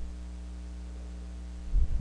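Steady electrical mains hum in the recording, a low drone made of several evenly spaced tones. Near the end a louder, irregular low rumble breaks in over it.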